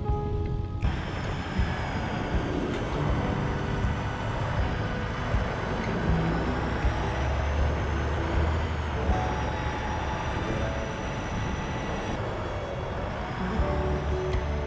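Engine and wind noise from a moving police motorcycle, with soft background music beneath. The vehicle noise cuts in suddenly about a second in.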